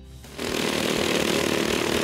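Racing ride-on lawnmower engines running hard at high revs, a steady dense buzz that starts about half a second in.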